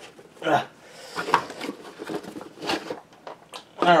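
Cardboard box being rummaged: rustling and scraping as a hand pulls the System Saver and its power cords out of it, with a couple of light knocks.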